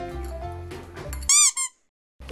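Light background music, cut off about a second and a quarter in by a loud, quick run of high squeaks. It is an edited squeak sound effect that is followed by a moment of silence.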